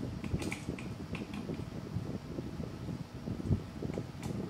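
Light clicks and knocks of hands shifting a metal 3D printer table frame and bed plate into position, with a low thump about three and a half seconds in.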